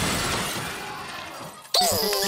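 Cartoon crash sound effect: a noisy, shattering clatter fading away over about a second and a half, then cut off suddenly near the end by music and a cartoon character's voice.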